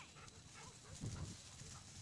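Faint short high calls from a dog, over a low rumble on the camcorder microphone, with a dull thump about a second in.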